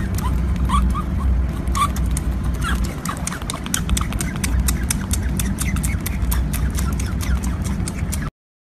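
Baby otter suckling at a milk bottle: rapid wet clicks of sucking throughout, with a few short, high squeaks in the first few seconds, over a low rumble.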